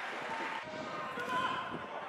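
Footballers shouting and calling across the pitch, with thuds of the ball being kicked.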